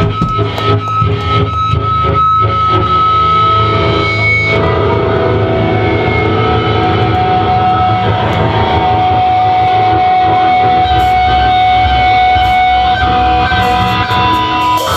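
Live heavy metal band playing loud, with distorted electric guitars and drums. About four seconds in the drum hits thin out, leaving the guitars holding long ringing notes, with a few scattered hits.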